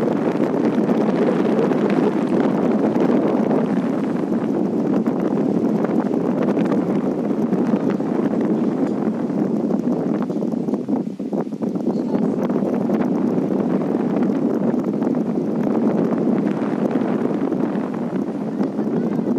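Steady wind buffeting the microphone high up in the open, a continuous loud rush that eases briefly about eleven seconds in.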